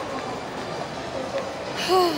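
Steady shopping-mall background noise, a continuous hum and hiss with no distinct events, and a woman's voice starting near the end.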